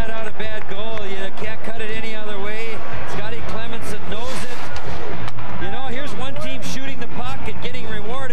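Voices talking continuously over steady arena background noise, with scattered sharp knocks.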